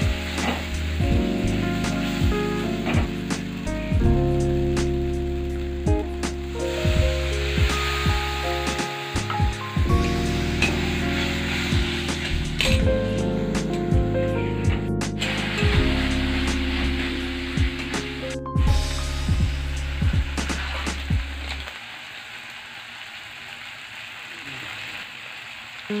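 Onion-tomato masala sizzling in oil in a metal kadai while a steel spatula stirs it, scraping and clicking against the pan, over background instrumental music. The music stops about four seconds before the end, leaving the frying sizzle on its own.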